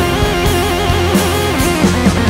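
Instrumental passage of a progressive rock song: guitars, bass and drums, with a lead melody line wavering in quick trill-like wobbles through most of it.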